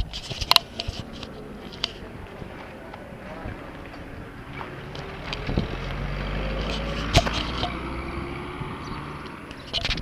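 A vehicle's engine approaching and passing on the road, growing louder to a peak about six to seven seconds in and then fading, with a few sharp clicks along the way.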